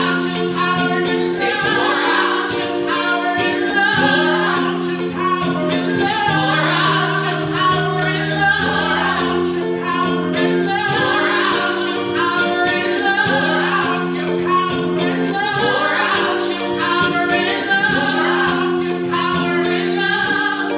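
Two women singing a gospel song into microphones, over held accompaniment chords that change every couple of seconds.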